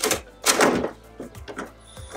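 Hole saw on a drill cutting through a fiberglass car hood, grinding in short bursts, the strongest about half a second in and weaker, shorter ones after a second.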